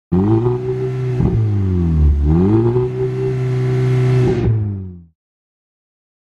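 Audi TTS's turbocharged four-cylinder engine running, heard at its twin exhaust tips. Its pitch dips and climbs back up a couple of times as the revs change, then it fades out about five seconds in.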